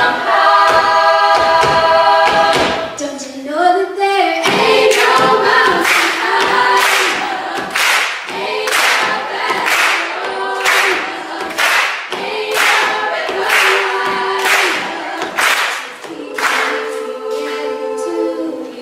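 Girls' and women's a cappella choir singing: a held chord for the first few seconds, then a rhythmic passage with regular sharp hits on the beat from about four seconds in.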